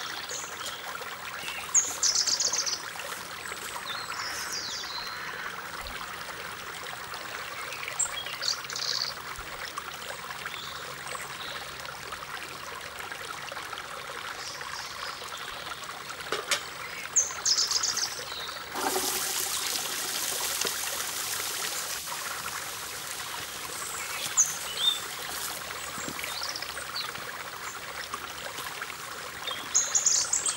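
Steady trickling of running water with short, high bird trills every few seconds. A louder, brighter hiss joins a little past halfway and lasts several seconds.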